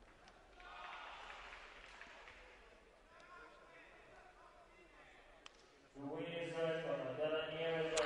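Faint hall murmur, then about six seconds in a man's voice comes over the arena public-address system, drawing out its words as the judges' decision is read.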